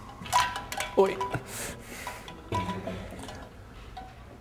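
Several light clinks and knocks of hard apparatus being handled, some ringing briefly, spread over the first three seconds.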